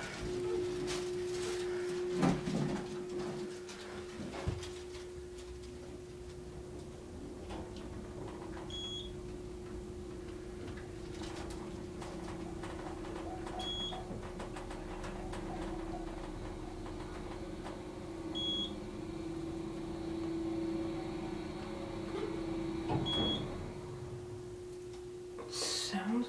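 Passenger elevator car travelling down with a steady hum, and a short high beep about every five seconds as it passes each floor, four in all. A few knocks come in the first few seconds and again near the end.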